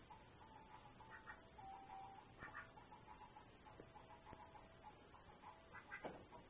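Faint clicks and light rattling of a hanging plastic baby rattle toy as a duck bills at it, a few separate ticks spread out.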